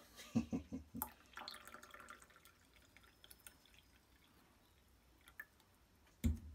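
Hot water trickling from an insulated flask into a ceramic mug, faint and brief, about a second and a half in, after a few light knocks of handling.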